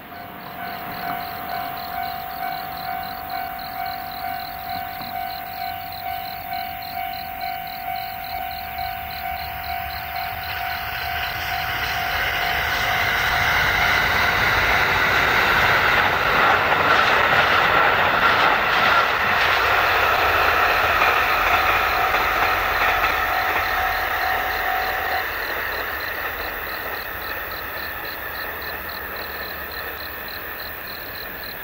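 A KiHa 183 series diesel train approaching and passing, its noise swelling to a peak a little past halfway and then fading. Over it a level crossing alarm rings a steady repeating ding about twice a second, stopping shortly before the end.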